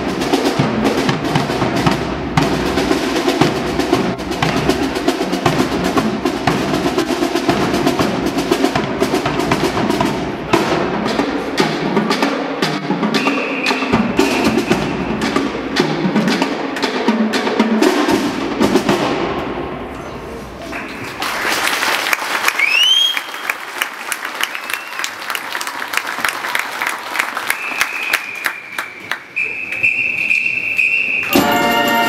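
A school marching band's drum section playing a fast drum stunt: dense, rapid snare strokes and rolls over fuller lower drum and band sound. About two-thirds of the way through it thins out to light, sharp clicking strokes.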